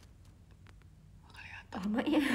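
Faint room tone for over a second, then a short whisper and a woman's voice starting loudly near the end.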